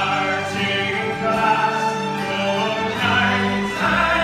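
A folk ensemble of fiddles, acoustic guitars, cello and accordion playing, with many voices singing together over it.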